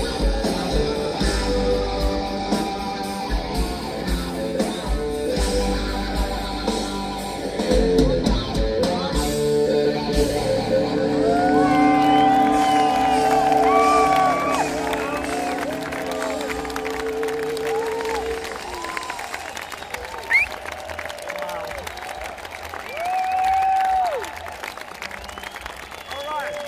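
A live rock band with guitar plays out the end of a song and holds a final sustained chord that stops about 18 seconds in. The festival crowd cheers over the close. It is heard from within the audience.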